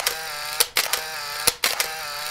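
Sound effects of an animated end card: a sustained synthesized tone broken by a series of sharp clicks and pops as the graphics move.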